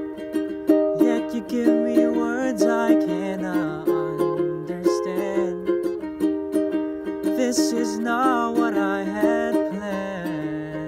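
Ukulele strummed in a steady rhythm of chords, with a man's voice singing a melody over it.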